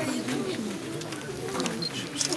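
Mourners sobbing and moaning in low, wavering voices, over the murmur of a crowd.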